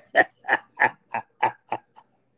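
A man laughing: a run of about seven short bursts, roughly three a second, fading near the end.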